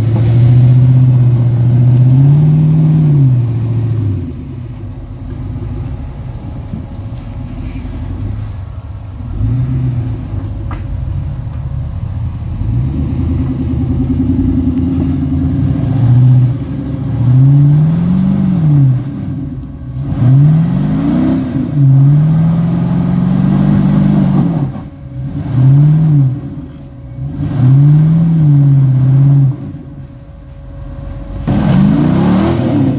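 Lifted Jeep's engine revving in repeated throttle bursts as it crawls up a rock ledge, the pitch climbing and dropping with each blip. A quieter stretch of low running comes in the first half.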